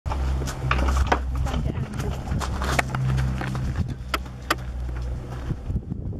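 Low, steady rumble of a B-2 Spirit stealth bomber's four turbofan engines as it flies overhead, with short sharp sounds scattered on top of it.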